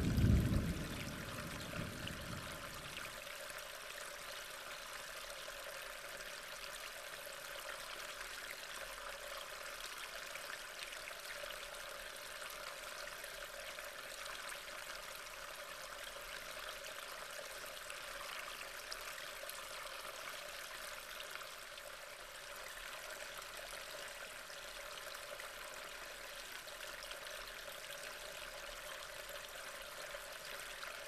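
Steady rushing of water, an even hiss with no pitch or rhythm. A loud, deep sound dies away over the first two or three seconds.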